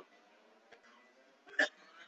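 Near silence in a pause between words, broken about a second and a half in by one short vocal sound, a hiccup-like catch in a man's throat.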